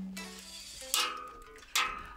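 A single electric guitar note ringing out and fading away, followed by two short, sharp sounds, one about a second in and one near the end.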